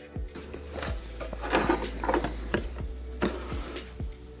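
A run of light knocks and clicks as the Celestron Origin's optical tube is handled and fitted onto its mount, with quiet background music underneath.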